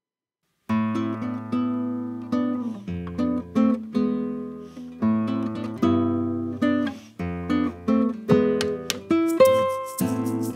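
Two guitars strumming chords with a percussive shaker: a dry, unprocessed bedroom recording. It comes in after a brief silence, a bit under a second in.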